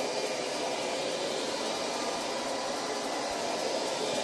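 Steady, even background hiss with nothing else standing out.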